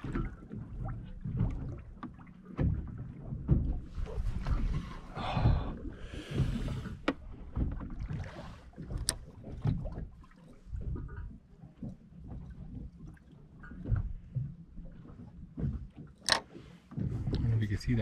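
Open-air ambience on a small boat: uneven wind rumble on the microphone and water lapping at the hull, with a couple of sharp clicks.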